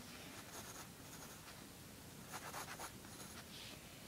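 Pencil sketching on paper: faint scratching of light strokes in a few short runs, with pauses between them.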